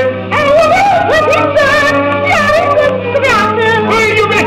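A 1927 Edison Bell 78 rpm shellac record playing a Romanian revue duet. The singing has a wavering vibrato and pitch slides, over a steady low hum.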